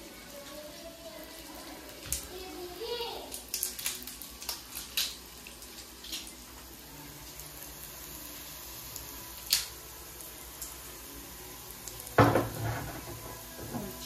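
Scattered clicks and clinks of a glass jar of salted soybean paste being opened and spooned out, over a faint sizzle of ginger and mushroom slices frying in oil in a wok. A louder knock comes about twelve seconds in.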